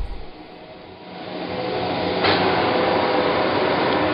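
Clausing Colchester 1550 engine lathe starting up: the spindle and three-jaw chuck spin up from about a second in, then run steadily with the motor and headstock gearing.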